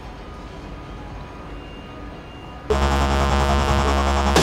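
Faint rumble of a DB class 111 electric locomotive and its coaches rolling slowly into a station. About two and a half seconds in, loud electronic music starts abruptly and takes over.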